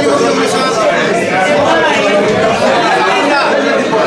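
Many voices talking at once in a crowded room: steady crowd chatter.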